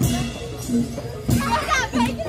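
Children shouting and shrieking excitedly, loudest about halfway through, over procession music with a short low note repeating about twice a second.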